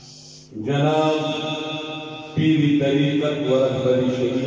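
A man chanting a devotional recitation into a handheld microphone, in two long held notes: the first starts about half a second in, the second about two and a half seconds in.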